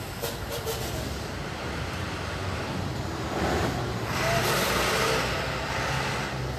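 A motor vehicle heard as a steady low rumble, swelling into a louder hiss about three seconds in and easing off near the end, as a vehicle passing by.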